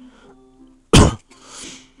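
A man coughs once, a single sharp burst about a second in, followed by a short breathy exhale.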